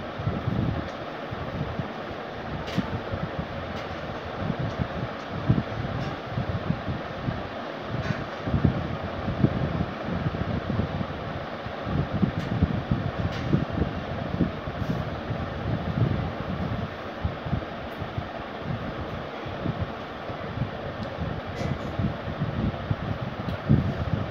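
Steady rushing background noise with an uneven, fluttering low rumble and a few faint ticks, with no speech.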